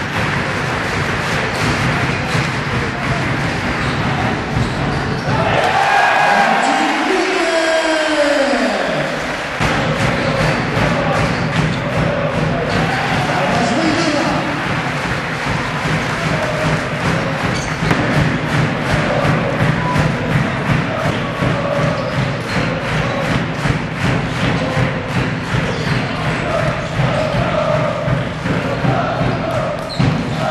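Sound of a basketball game in an indoor hall: a ball bouncing on the court and squeaks and thuds of play under crowd voices, with a steady rhythmic beat through the second half.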